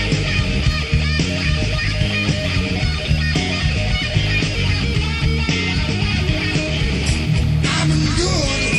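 Rock music with guitar, played by a full band: loud and steady, with a change in the playing just before the end.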